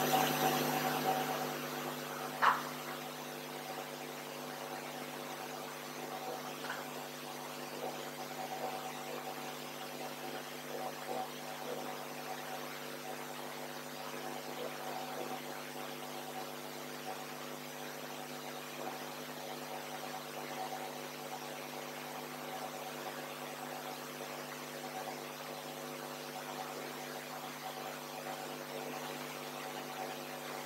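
Steady electrical hum made of several held low tones over a faint hiss, with one short sharp knock about two and a half seconds in.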